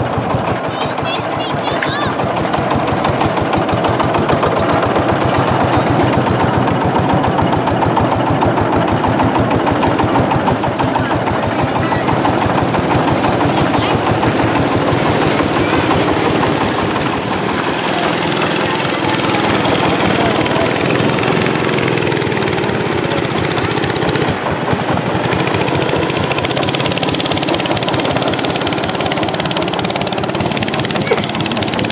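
Long-tail boat engine running steadily at close range, a fast, even chugging that continues throughout.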